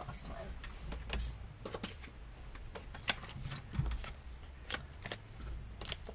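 Tarot cards being handled and dealt: a run of irregular sharp clicks and light slaps as cards are flipped and laid down.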